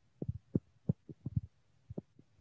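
Irregular low thuds and knocks, several a second: handling noise from a phone held in the hand as its holder moves.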